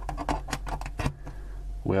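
Small plastic clicks and scrapes as a USB LED light's plug is worked into the router's USB port, ending in a clicked-in fit.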